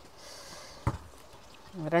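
Quiet background with a single short click about a second in, then a woman's voice starting near the end.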